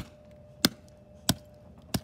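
A small hammer striking a broken iPhone lying on gravelly ground: four sharp blows, evenly spaced about two thirds of a second apart.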